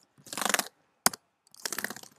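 Two short bursts of rapid crackling clicks, each about half a second long, with a single sharp click between them.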